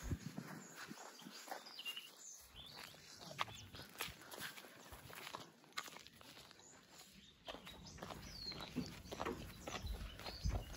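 Faint footsteps and rustling on dry, freshly cut grass: a scatter of soft crunches and ticks.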